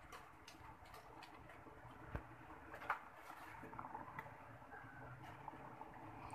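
Water boiling in a metal pot, faint bubbling with small irregular pops and ticks, and two sharper clicks about two and three seconds in.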